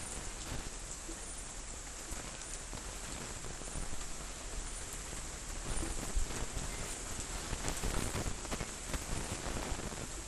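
Steady rain falling in a storm: an even hiss with many faint scattered drop ticks over a low rumble.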